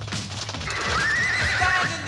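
A horse whinnying: a high, wavering neigh that starts about a second in and begins to fall in pitch at the end.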